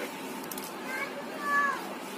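A cat meowing: a short call about a second in, then a louder, longer meow that falls in pitch at its end.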